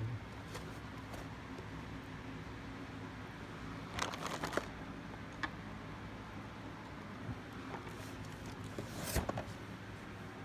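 Cardboard LEGO set box being handled and turned over in the hands: small scattered clicks and two short bursts of rustling and scraping, about four seconds in and near the end.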